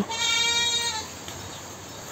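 A goat bleating once: a single wavering call lasting about a second.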